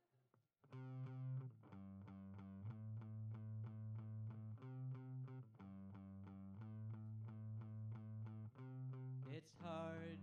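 Hollow-body electric guitar strummed hard through an amp with the distortion turned up, starting about a second in. The chords are struck in a steady, driving rhythm for a fast punk rock song and change every second or two.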